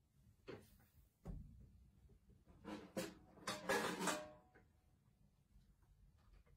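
Faint handling noises: a couple of short knocks in the first second or so, then a louder cluster of clatter and rustling from around two and a half to four seconds in, as gear such as headphones is picked up and handled.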